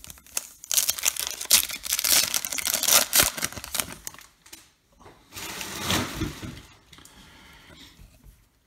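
Plastic trading-card pack wrapper being torn open and crinkled, a dense crackle lasting about three seconds. A shorter second burst of rustling follows about five seconds in.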